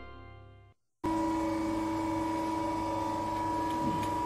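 The fading tail of a logo music sting, cut off less than a second in; after a brief gap, a steady electrical hum with a constant high whine, unchanging in level.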